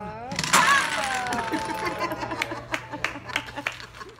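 A tower of small wooden stacking blocks collapsing and clattering onto a tabletop, followed by scattered clicks of blocks. Over it a woman's long exclamation, slowly falling in pitch, runs into laughter.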